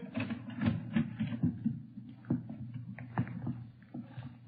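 Footsteps of several people walking into a room, an old-time radio sound effect: a run of uneven, soft strokes over the recording's faint steady hum.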